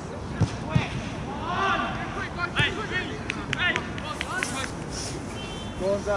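Footballers shouting and calling to each other across an outdoor pitch, many short calls from different voices over a steady low rumble on the microphone, with two dull thumps about half a second in.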